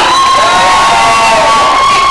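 Audience cheering and screaming, with one long high-pitched scream held over the crowd.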